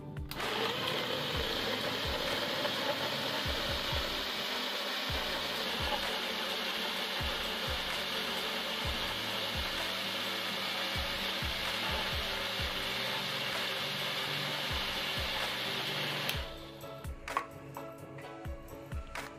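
Electric countertop blender pureeing avocado with condensed milk, cream and milk: the motor winds up just after the start, then runs with a loud, steady whir and cuts off about two seconds before the end.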